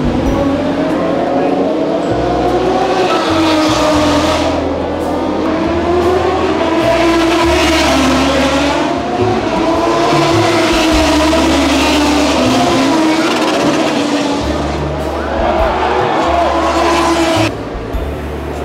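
MotoGP race bikes running on a rain-soaked circuit, their engine notes rising and falling for seconds at a time as they pass and change gear, over a low rumble that cuts in and out.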